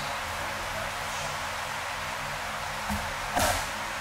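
A body landing on the dojo mats in a breakfall as an attacker is thrown: a light knock and then a loud slapping thud about three and a half seconds in, over a steady hiss.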